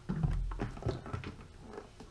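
Containers handled on a kitchen counter: a plastic cooking-oil bottle is set down with a dull thump, then a plastic tub of spread is picked up with several light knocks and clicks.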